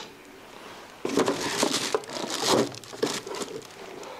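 Packaging rustling and crinkling in irregular bursts for about two seconds, starting about a second in, as a welding torch and its cable are handled and put away.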